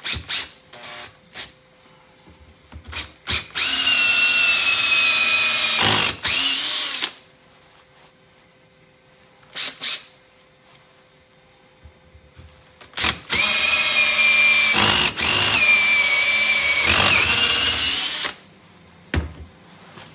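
Cordless drill with a hole saw boring through a flexible rubber pipe cap: a few short trigger pulls, then two long runs of a steady high whine, the second of about five seconds.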